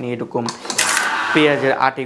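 Small tabletop automatic tape-bundling machine running one cycle about half a second in: a short, rasping mechanical burst of under a second as it wraps, tensions, seals and cuts a tape band around a bundle.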